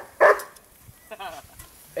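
A dog barks once, a short sharp bark just after the start, followed by a fainter wavering sound about a second in.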